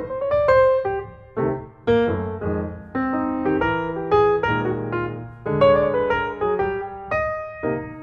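Background piano music: single notes and chords struck one after another, each fading away before the next.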